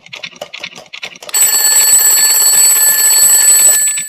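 Twin-bell alarm clock ticking rapidly, then its bell ringing loudly from about a second in, a wake-up alarm that stops just before the end.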